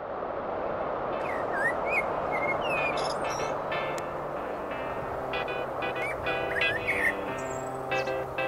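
Birds chirping over a steady rushing background, with soft sustained instrumental music fading in about halfway through.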